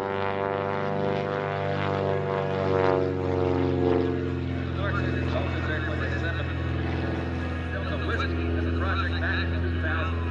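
Super Chipmunk aerobatic plane's piston engine and propeller passing overhead. The note slides down in pitch over the first four seconds or so, then holds steady.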